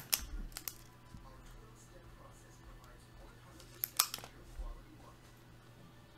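Quiet room with a faint steady hum and a few short, sharp clicks: several near the start, a louder pair about four seconds in, then a softer one.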